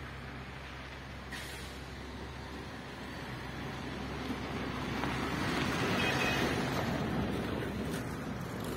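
A motor vehicle's engine and road noise, a steady low hum that swells to its loudest about six seconds in and then eases off, as a vehicle passes.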